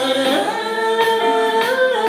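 A woman singing one of her own songs, holding long notes that step up and down in pitch.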